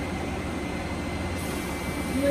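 Steady machine hum and fan noise from the running fiber-laser setup and its cooler, with a low hum and a faint high whine held at one pitch.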